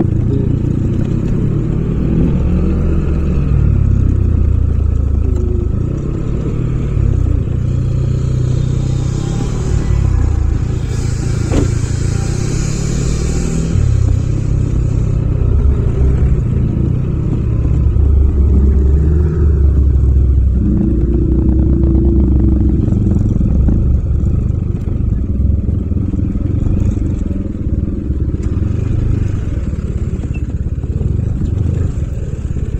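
Yamaha Aerox 155 scooter's single-cylinder four-stroke engine running while riding, its note shifting as the throttle opens and closes. A brief hissing rush comes about a third of the way in.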